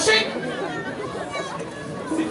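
Speech only: a man's voice says "okay" at the very start, then a murmur of many voices talking in the background.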